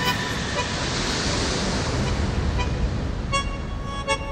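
A rush of noise mixed into a lounge music track swells about a second in and fades away, with the music faint beneath it. The music comes back clearly near the end.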